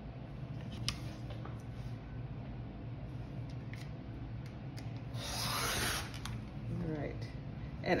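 Rotary cutter drawn along a quilting ruler, slicing through layers of fabric on a cutting mat: one cutting stroke of about a second, a little past the middle.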